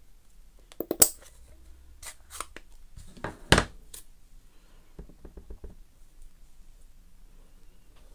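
Plastic clicks and knocks from an ink pad case and a clear acrylic stamp block being handled on a craft mat. There is a sharp snap about a second in and another about three and a half seconds in, then a quick run of light taps a little after five seconds: the stamp being tapped on the ink pad to ink it.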